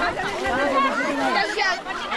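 Several people talking and calling out at once: overlapping chatter from a group of voices.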